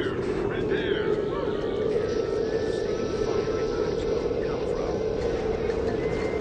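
A steady low droning ambience with a hum-like core, joined by a hissing rush about two seconds in; a few faint gliding cries sound near the start.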